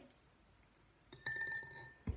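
An egg sinking in a drinking glass of tap water knocks against the glass about a second in: a clink, then the glass rings with one clear, steady high tone.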